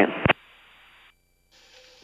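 The last word of an air-traffic-control radio transmission, cut off by a single click as the transmission ends, then near silence on the headset audio with faint hiss. About a second and a half in, a slightly louder hiss starts as a microphone is keyed.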